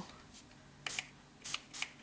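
Plastic finger-pump spray bottle misting paint onto a sketchpad page: three short sprays in quick succession, starting about a second in.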